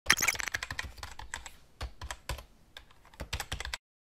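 A rapid, irregular run of sharp clicks like typing on a computer keyboard. It is dense at first, sparser in the middle, and picks up again in a quick burst near the end before stopping suddenly.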